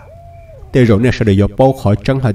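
A man narrating a story in Hmong, his voice coming in about a third of the way through. Before it there is a faint, short single note that rises and falls.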